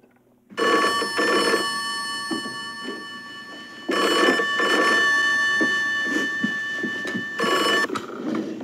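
A 1960s rotary-dial telephone's bell ringing in double rings, two short rings, a pause, then two more, the bell ringing on between them. It starts about half a second in and cuts off right at the end as the handset is lifted.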